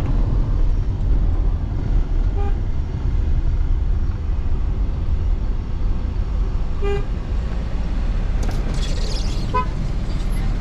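Steady low engine and road rumble heard inside a moving car, with short car-horn toots from traffic three times: about two and a half seconds in, a clearer one about seven seconds in, and another near the end.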